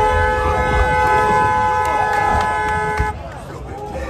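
A car horn held down in one long blast that cuts off suddenly about three seconds in, over people shouting.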